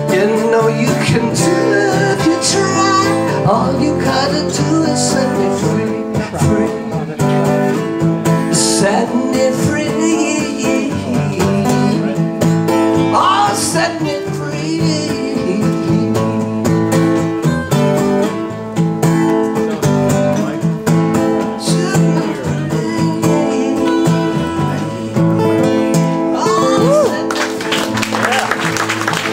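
Two acoustic guitars strumming chords together in a live folk-rock performance, playing out the end of the song. Applause starts just at the end.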